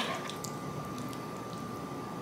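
Faint, steady sizzle from the pan of saucy noodles, with a couple of light clicks as tongs lift the noodles out.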